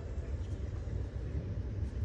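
A pause in the violin playing: a steady low background rumble with faint room noise, and no instrument sounding.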